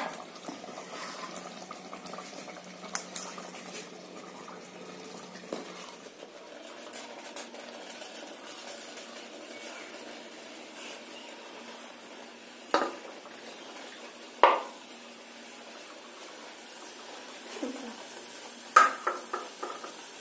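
Cooked rice being layered by hand from a steel plate into a clay pot of simmering chicken masala: a steady low hiss of the pot underneath, broken by a few sharp knocks of the plate and kitchenware, the loudest about thirteen and fourteen and a half seconds in, and a quick run of clinks near the end.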